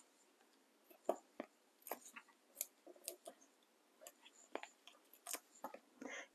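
Faint, scattered small clicks and paper rustles as foam adhesive dimensionals are peeled from their backing sheet and pressed onto cardstock.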